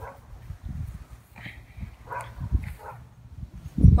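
A dog giving a few short, faint barks, spaced out over a few seconds, over a low rumbling noise.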